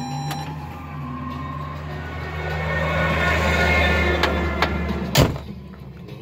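Heavy truck driving past, heard from inside a truck cab over a steady low hum: its noise swells towards the middle and fades, and a sharp click comes near the end.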